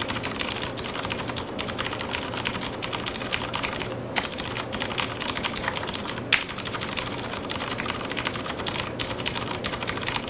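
Fast touch-typing on a Das Keyboard Model S Professional mechanical keyboard: a rapid, continuous stream of key clicks at roughly 110 words per minute, with one louder key strike about six seconds in.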